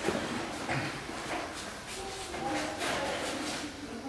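Faint, indistinct voices under a scattering of soft knocks and taps.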